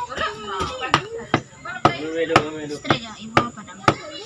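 Kitchen knife chopping on a wooden cutting board: about eight sharp, uneven strokes, roughly two a second.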